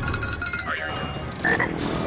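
Cartoon soundtrack: music mixed with comic sound effects, with a sudden sharp sound about one and a half seconds in.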